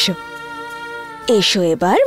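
Wordless voice sounds sliding steeply up and down in pitch, broken in the middle by a steady held note of background music about a second long.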